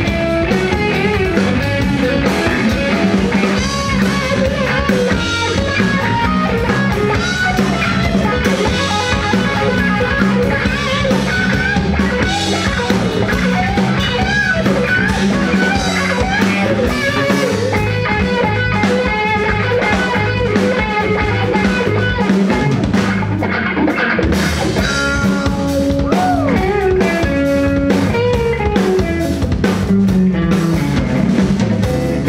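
Live band playing an instrumental section of a funky rock song: electric guitar taking the lead with string bends, over electric bass and a drum kit.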